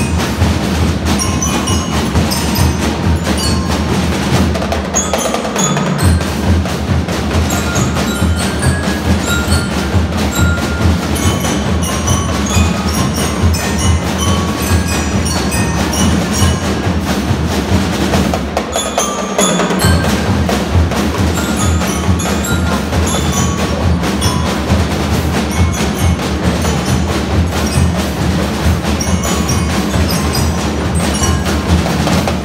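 A live school drum band playing: marching drums beat a steady rhythm under a melody on glockenspiel-type mallet bells. The low drums drop out briefly twice, about five seconds in and again near the middle.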